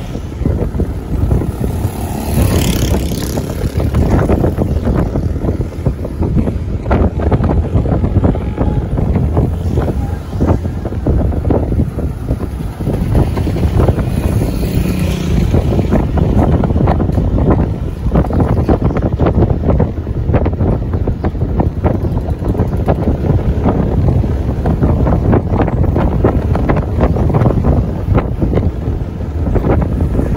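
Wind buffeting the microphone of a camera riding on top of a moving vehicle: a loud, steady low rumble with constant gusty flutter, over the vehicle's road noise.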